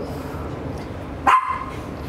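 Shih Tzu giving one short, high yelp about a second and a half in, a pain response as its swollen, bruised perineal area is pressed.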